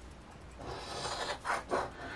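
The latex coating being scratched off a paper scratch-off lottery ticket, with short rasping strokes. The strokes begin about half a second in, and the two loudest come near the end.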